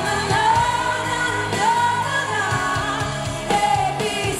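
Female pop vocalist singing live into a microphone, holding long notes that waver in pitch, over a live rock band accompaniment.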